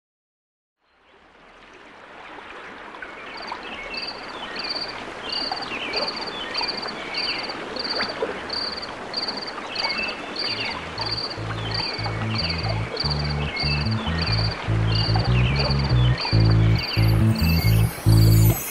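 A night-time nature ambience of frogs croaking and an insect chirping in an even rhythm, about three chirps a second, fading in at the start. About ten seconds in, a bass line enters beneath it and grows louder as the song intro builds.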